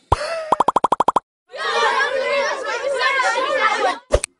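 A short stuttering electronic sound effect: a falling tone, then a rapid string of about ten buzzing pulses. After a brief silence, many voices chatter over one another.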